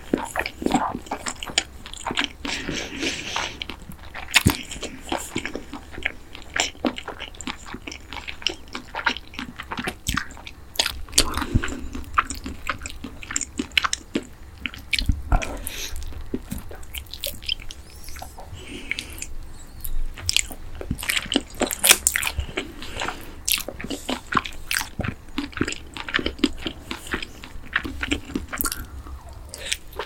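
Close-miked biting and chewing of boneless yangnyeom fried chicken in sweet-spicy sauce: crunching of the coating with many short, sharp clicks and crackles.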